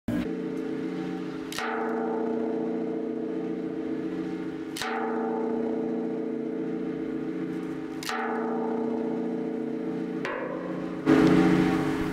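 Intro music of struck, gong-like metallic tones, a new stroke every two to three seconds with long sustained ringing between them, swelling louder near the end.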